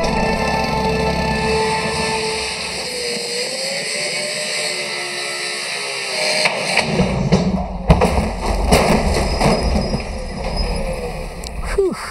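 Disc cut-off saw cutting through the aluminium skin of an airliner wing, over background music. From about seven seconds in, a run of irregular knocks and bangs.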